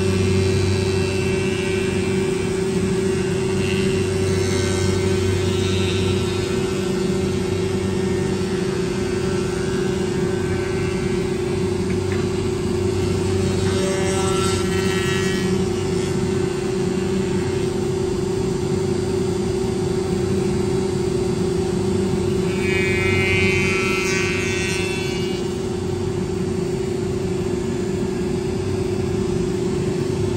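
Wood-Mizer MP360 four-sided planer running with a steady hum and a constant mid-pitched tone while pine boards feed through it. Three times, at about 3 s, 14 s and 23 s, a higher-pitched sound rises over it for a second or a few.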